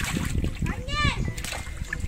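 Water splashing and sloshing in a bucket as a live fish is grabbed and lifted out by hand, with water dripping back in. A short rising-and-falling voice call sounds about a second in.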